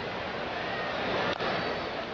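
Steady ballpark crowd noise, with the single crack of a wooden bat hitting a pitched ball about a second and a half in, a chopped ground ball. The crowd gets a little louder after the hit.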